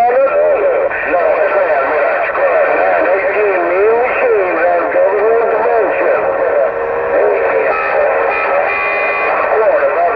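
Uniden Grant LT CB radio's speaker playing overlapping, unintelligible voices from other stations on channel 6, with warbling pitch. A steady whistle sits over the voices for about a second, a little past the middle.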